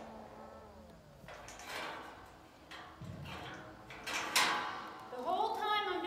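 Metal pipe gate being swung shut: a few knocks and rattles of steel, ending in one sharp metallic clank with a short ring about four seconds in as it meets the latch post.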